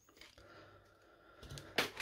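Quiet handling of trading cards on a table. Near the end there is one short, sharp tap or crinkle as a hand reaches to the foil card packs.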